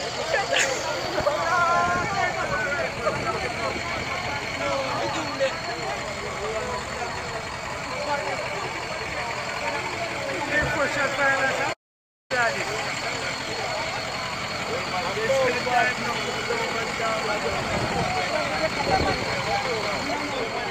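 A truck engine idling steadily under people talking, with a split-second dropout of all sound about twelve seconds in.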